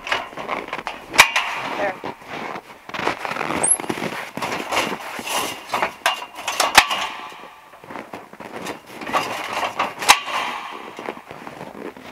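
Steel scaffold frame being shifted and its locking pins dropped into the holes: three sharp metal clanks, about a second in, near the middle and about ten seconds in, amid rattling and handling noise.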